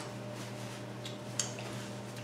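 Quiet room tone: a steady low electrical-sounding hum, with one faint click about one and a half seconds in.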